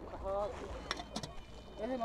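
Outdoor ambience: a brief faint voice near the start, a steady low rumble of wind on the microphone, and a couple of sharp clicks about a second in.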